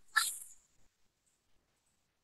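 A brief, fading vocal sound from a man's voice in the first half second, then near silence: a pause in the speech.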